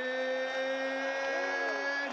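A ring announcer's voice holding one long drawn-out vowel as he stretches out the fighter's surname in a boxing introduction. The pitch creeps slightly upward and drops away right at the end.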